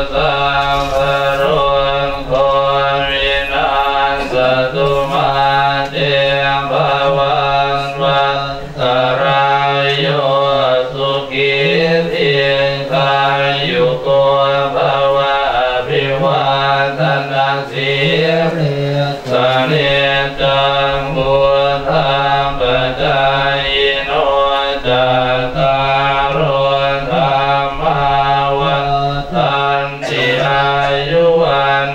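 A group of Buddhist monks chanting Pali blessing verses in unison: a continuous, low, steady recitation held on a nearly constant pitch, amplified through handheld microphones.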